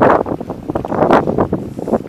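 Wind blowing across the camera's microphone, a loud gusting rush that rises and falls.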